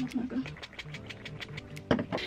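Background music with a quick, even ticking beat and short low bass notes. A sharp knock sounds just before the end.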